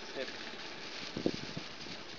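A man sipping water from a clear plastic bag: a few short slurping sounds about a second in, over a steady faint outdoor hiss.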